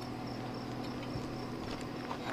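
Crickets trilling steadily and without a break, over a low steady hum.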